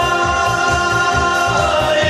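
A group of four men singing in harmony, holding one long chord over a steady low beat.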